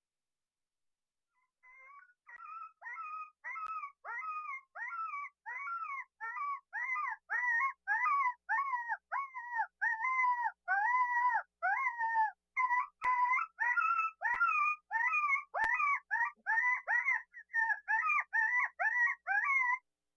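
Coyote yipping: a long run of short, downward-sliding yips, about two a second. They start about two seconds in and grow louder.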